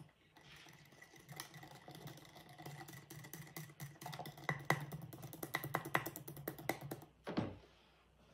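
Small handheld battery whisk running in a glass jar of thick yogurt starter and cream, a steady motor hum and whine with quick irregular clicks as the whisk knocks the jar walls. It stops about a second before the end.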